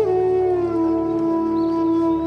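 Bansuri bamboo flute sliding down in pitch to a long, steady held note over a low, steady drone.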